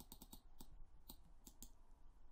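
Faint, irregular clicking of computer keys, about five clicks a second.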